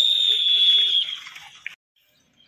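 A single high whistle blast, held steady for about a second and then stopping, over faint outdoor ground noise. A brief chirp follows, then the sound drops to near silence.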